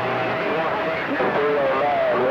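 CB radio receiving a distant skip station on channel 28: garbled, hard-to-make-out voices buried in steady band static. A steady whistle from an interfering carrier sounds over them for about the first second.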